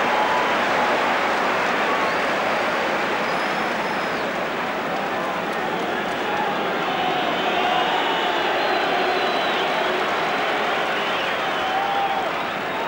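Football stadium crowd: a steady din of many voices, with chanting rising above it from about six seconds in.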